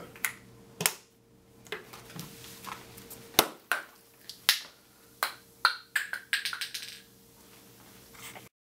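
A plastic film canister popping as carbon dioxide pressure from a fizzing antacid tablet blows it off its lid and launches it: one sharp, loud pop about three and a half seconds in. A light click comes about a second in, and a run of smaller clicks and taps follows the pop.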